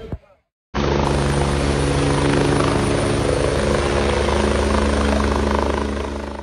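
Military helicopter in flight, its rotor and engine running loud and steady. The sound cuts in abruptly less than a second in, after a brief silence.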